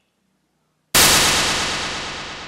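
A single sudden loud crash about a second in, followed by a long, steadily fading ring.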